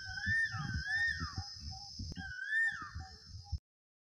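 Closing jingle: a whistle-like tone that glides up and down in the same figure three times over a light, evenly spaced beat, cutting off suddenly about three and a half seconds in.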